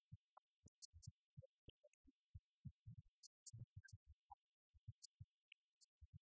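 Near silence, broken by faint, irregular low thumps.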